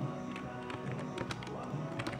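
Country music playing on the radio: a song with sustained notes over sharp percussion hits.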